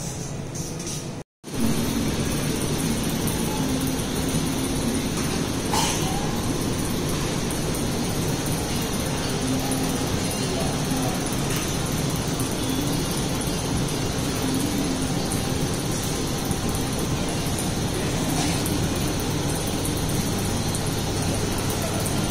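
Steady shop background noise with a low hum. About a second in it drops out for a moment and comes back.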